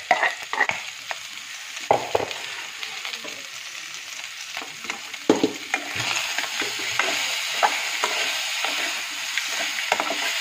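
Pork frying and sizzling in an aluminium pan while a metal spoon stirs it, scraping and knocking against the pan. The sizzle grows louder about six seconds in.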